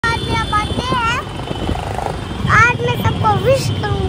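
High-pitched voices calling in swooping, rising-and-falling tones, in short bursts over a steady low rumble.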